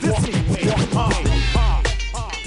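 Late-1980s hip hop record, 132 BPM: a beat with rapid turntable scratching between rap lines. A bass line comes in a little past halfway.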